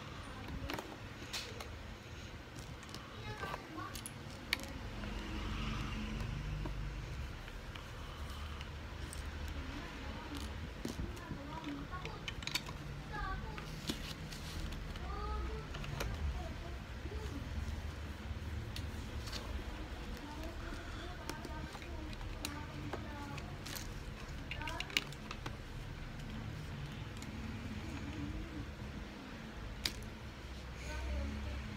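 Plastic toy bricks clicking and clattering as they are handled and pressed together, with scattered sharp clicks, and voices in the background.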